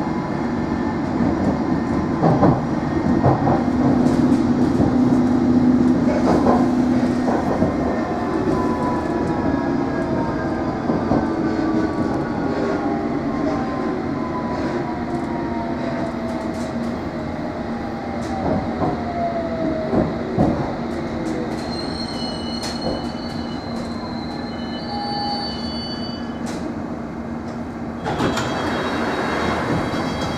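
Inside a London Underground S7 Stock train running with steady rumble and wheel clicks, the electric traction whine gliding down in pitch as it brakes for the station. High squeals come from the wheels near the end as it slows to a stop.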